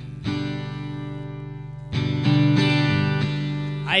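Acoustic guitar strumming chords: one chord strummed and left to ring, then a louder chord about two seconds in, held ringing as a song's opening.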